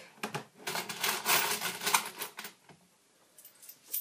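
Coins and Lego parts clattering in a hand-worked Lego coin pusher: a dense run of rattling clicks lasting about two seconds, then a few scattered clicks.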